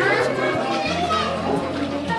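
Children's voices talking and calling over background music with steady held bass notes.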